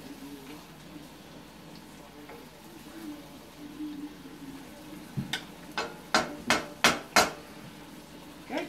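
Faint frying in a pan of mushrooms, then a quick run of about six sharp knocks of kitchen utensils on a wooden cutting board, a little over a second from last to last.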